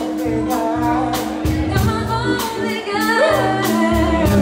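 Live band playing a song: a voice singing over a steady drum beat, electric bass and keyboards.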